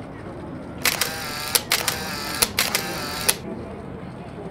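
Camera shutters firing in three rapid continuous bursts, each lasting under a second, with sharp clicks where each burst starts and stops.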